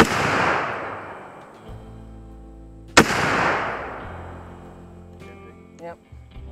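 Two rifle shots from a short-barrelled AR-15 pistol, about three seconds apart, each followed by a long echo that rolls away over a second or more. Background music with guitar plays underneath.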